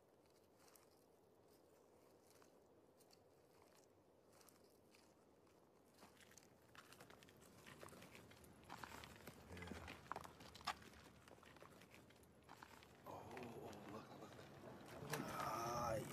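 Near silence for the first few seconds, then scattered footsteps crunching on debris from about six seconds in. A faint voice rises near the end.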